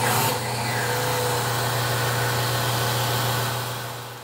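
XpressFill XF460 bottle filler running with a steady low hum and hiss as bourbon flows through its four spouts into the bottles. The sound starts suddenly and fades out near the end.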